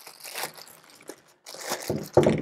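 Clear plastic bag crinkling as a carbon-fibre tripod is worked out of it by hand, in uneven bursts with a brief lull about a second and a half in.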